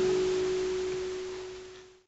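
The last note of a steel-string acoustic guitar left ringing as one clear sustained tone, slowly dying away. It fades to nothing at the very end.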